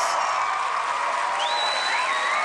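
Studio audience applauding steadily as a performer walks onto the stage, with a few faint high gliding tones coming in about halfway through.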